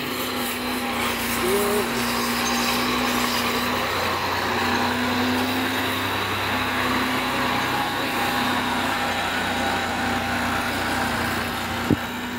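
Massey Ferguson tractor's diesel engine running steadily at an even pitch. A brief voice cry comes about a second and a half in, and a sharp knock near the end.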